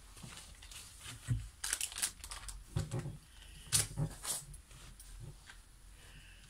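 Irregular rustling, crinkling and clicking handling noises in three short clusters, about a second and a half, three and four seconds in.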